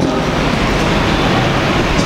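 Steady, even rushing background noise with no clear tone or rhythm; no voice is heard.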